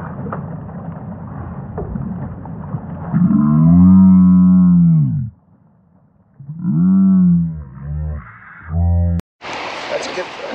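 Slowed-down replay audio: a person's shouts stretched into deep, drawn-out groans over a low rumble of slowed river and wind noise. Two long groans come about three and six and a half seconds in, then two short ones, and the sound cuts off abruptly near the end.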